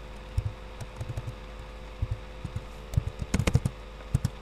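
Computer keyboard typing: irregular key clicks, with a quick flurry of keystrokes about three and a half seconds in, over a faint steady hum.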